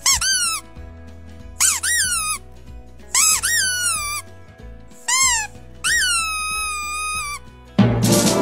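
Pug puppy howling in five high-pitched calls, each rising then falling in pitch; the last one is the longest.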